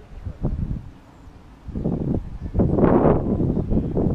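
Wind buffeting an outdoor camera microphone in uneven gusts, with a lull about a second in and a stronger gust near the end.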